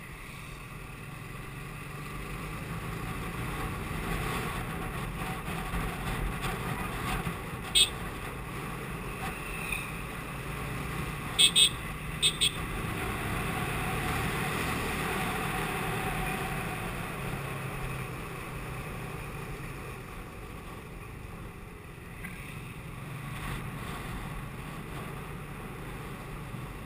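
TVS Apache RTR 180 motorcycle's single-cylinder engine running under way, with wind rushing over the microphone, growing louder from about four seconds in and easing again after the middle. A few short, sharp sounds stand out as the loudest events: one about eight seconds in and two quick pairs near twelve seconds.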